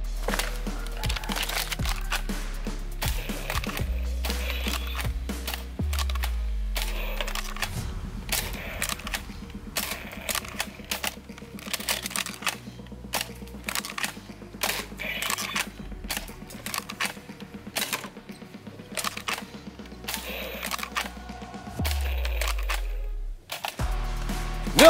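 Background music with a deep, stepping bass line. Over it come many sharp clicks and knocks: a Nerf Zombie Strike FlipFury blaster firing foam darts and the darts hitting plastic targets.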